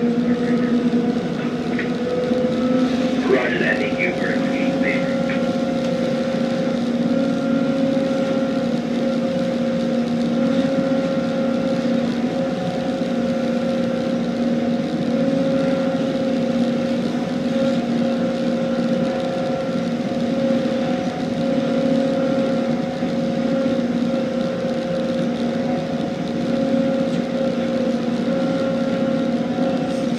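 Tugboat's diesel engine running steadily under load while pushing a barge: an even, unchanging drone.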